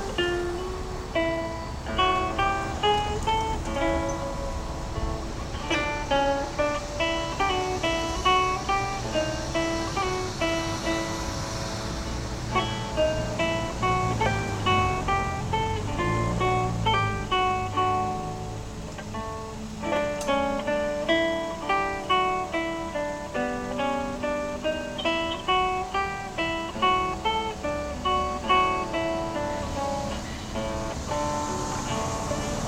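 Solo acoustic guitar played fingerstyle: a melody of separately plucked notes over bass notes, with a brief lull about two-thirds of the way through.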